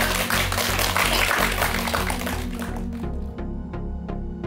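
A group of people clapping and cheering over background music with a steady beat. The applause dies away about three seconds in, leaving the music.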